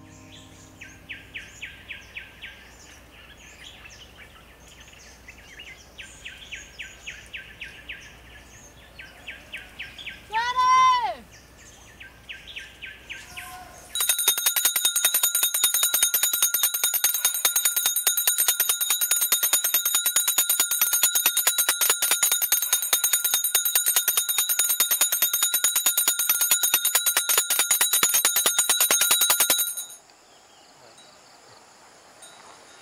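Insects chirping in quick, faint pulses, with one short call that rises and falls in pitch a little past ten seconds in. About halfway a much louder chorus of buzzing insects starts suddenly: a dense fast pulsing with steady high whines, which cuts off abruptly at the end.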